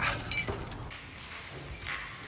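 A few short metallic clinks and a brief jingle in the first second as a glass door with metal pull handles is handled, then quieter handling noise.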